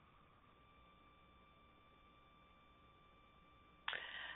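Near silence on a dropped phone line, with only a faint steady tone: the guest's call has cut out.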